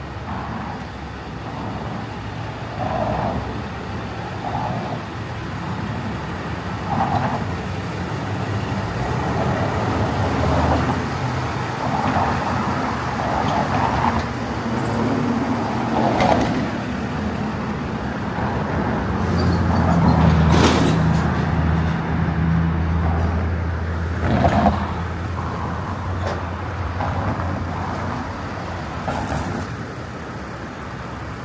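Road traffic on a town street: cars and trucks driving past, with one vehicle's engine hum strongest about two-thirds of the way through, and a few brief sharp knocks.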